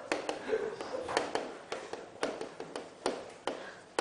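Chalk striking and tapping on a chalkboard during writing: an irregular run of sharp taps, with faint voices in the room.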